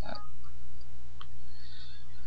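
Computer mouse click, a single short click a little over a second in, over a steady low electrical hum picked up by the microphone.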